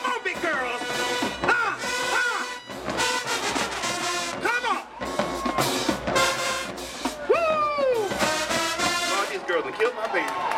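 High school marching band playing, its brass section sounding dense chords with notes that slide and fall in pitch.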